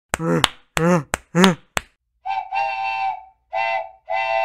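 Three short voiced sounds whose pitch rises and falls, with a few sharp clicks, then a steady whistle-like tone sounding in two blasts about a second long, used as a transition sound effect.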